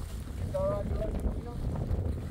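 Wind buffeting the microphone with a steady low rumble, over the crinkle and rustle of a woven plastic tarp being gathered up and folded.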